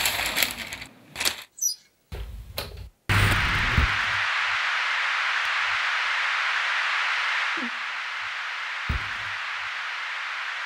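Film soundtrack heard through a hall's speakers: a few seconds of choppy sound cut off abruptly twice, then a steady hiss like television static starting about three seconds in, dropping a little in level a few seconds later, with a faint thump near the end.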